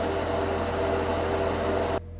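Hobby paint spray booth's exhaust fan running with a steady hum.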